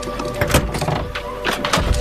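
Steady film-score drone with a few sharp knocks and clicks from a car door being opened: a cluster about half a second in and two more near the end.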